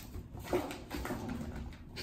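A cat mewing briefly a couple of times, with light knocks as kittens scamper about.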